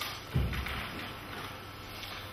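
A single dull thud about a third of a second in, heavy in the low end, then faint hall room tone.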